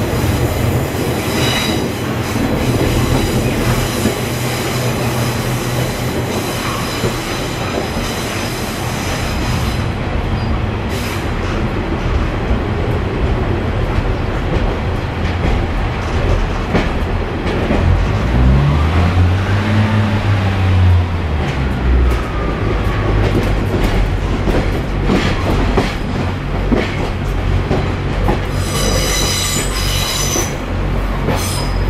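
Cabin ride noise of a Class 142 Pacer diesel railbus, heard from inside the saloon: a steady rumble of the underfloor diesel engine and running gear. Its four-wheel chassis squeals with high-pitched wheel squeal through the first third and again near the end. About two thirds of the way in, a low engine tone rises and falls.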